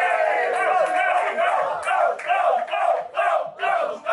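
A crowd of battle spectators shouting in reaction to a punchline: a long drawn-out group "ooh" that breaks after about a second into rhythmic shouts, two or three a second.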